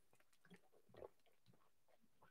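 Near silence with faint swallowing sounds as a man drinks from a plastic water bottle.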